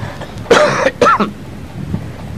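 A man coughs twice: a harsh cough about half a second in, then a shorter one just after.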